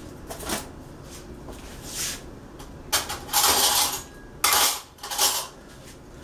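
Spoon and dishes clattering and scraping on a kitchen counter: a few light clinks, then three or four louder rattling scrapes in the second half.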